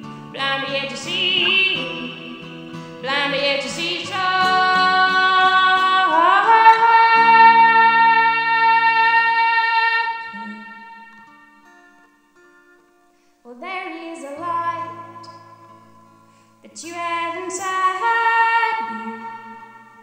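A woman singing long, wordless held notes over a softly played acoustic guitar. About six seconds in, her voice swoops up into a long held note that fades almost to silence; the singing picks up again shortly after.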